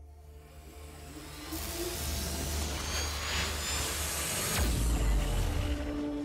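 Cinematic logo-reveal sound effect over ambient music: a hissing whoosh swells in during the first two seconds, and a deep boom hits about two-thirds of the way through.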